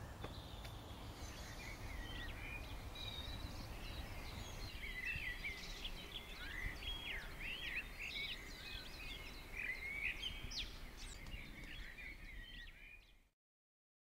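Songbirds chirping and calling in woodland, many short rising and falling notes, over a low steady rumble. The sound cuts off near the end.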